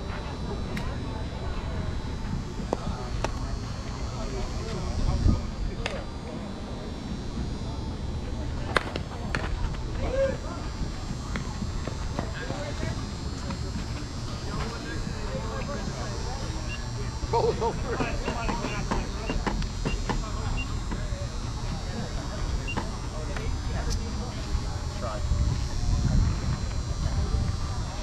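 Faint distant voices of players over a steady low outdoor rumble, with a sharp crack about nine seconds in: an aluminium-style softball bat hitting the ball.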